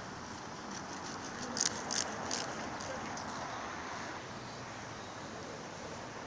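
Busy city street ambience: a steady wash of traffic noise and passers-by's voices, with a few short sharp clicks about one and a half to two and a half seconds in.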